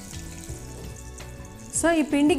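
Soft background music under a faint, steady sizzle of oil frying in a kadai, with the host's voice coming back in just before the end.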